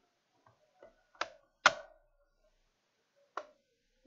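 The plastic clips of an HP Pavilion G7 laptop's back cover popping into place as the cover is pressed down. A few sharp snaps: the loudest about a second and a half in, and a last one near the end.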